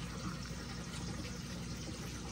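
Aquarium filtration water running steadily, with a faint low hum underneath.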